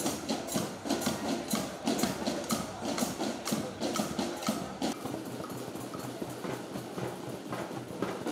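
Children's marching band percussion playing a steady beat of sharp, clicking strikes, which turn quieter and sparser about halfway through.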